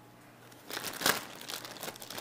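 Plastic zipper bag crinkling as a hand rummages among the marinated vegetables inside it. The crinkling starts a little under a second in and is loudest about a second in.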